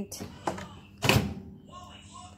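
Microwave oven door being swung shut, with a loud thump about a second in after a couple of lighter knocks.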